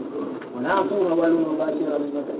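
A man's voice speaking slowly in long, drawn-out tones, starting about half a second in after a brief lull.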